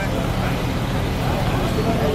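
Steady low hum of a coach's engine running, with faint murmuring voices over it.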